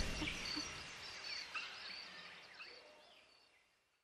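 The tail of a channel intro's soundtrack: soft nature ambience with a few faint bird-like chirps, fading out over the first three seconds.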